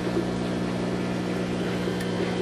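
Steady low electric hum of running aquarium equipment, unchanging throughout.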